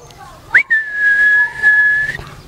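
Whistling: a quick upward slide about half a second in, then one long steady high note held for about a second and a half.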